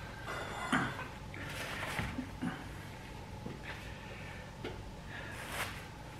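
Faint rustling and a few soft bumps: hot ears of corn in their husks handled with cloth oven mitts and laid on a cutting board.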